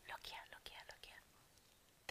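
Faint whispered muttering for about the first second, then near silence.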